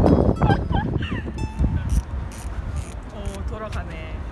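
Gulls calling, several short gliding calls, over heavy wind noise on the microphone that drops away about halfway through.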